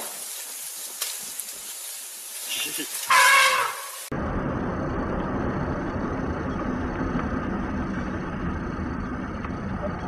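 A hissing, rustling stretch with a loud, high-pitched cry lasting under a second about three seconds in, then an abrupt cut to the steady rumble of a car driving on a highway, heard through a dashcam.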